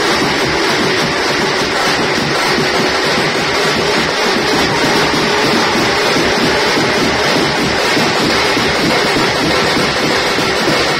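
A Tamil drum band playing a fast, dense, continuous beat on parai-style frame drums and large shoulder-slung bass drums, the strikes packed close together and loud.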